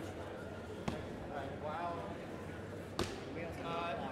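Indistinct talk of people in a large hall, with two sharp knocks, about a second in and again near the end, as things are handled on the stage.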